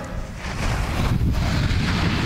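Wind buffeting the camera microphone: a steady low rumble of noise that sets in right after the music breaks off.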